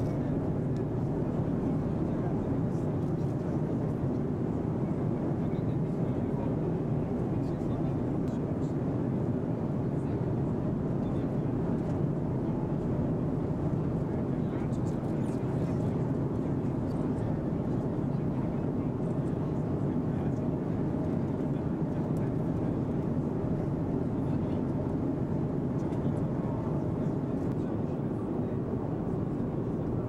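Steady jet airliner cabin noise in flight: an even engine and air hum with indistinct chatter of people in the cabin.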